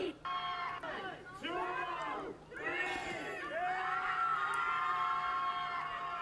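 A crowd of people cheering and shouting together, with several long held screams in the second half.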